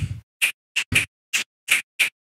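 Hands clapping in a quick, uneven run of short, sharp claps, about three a second.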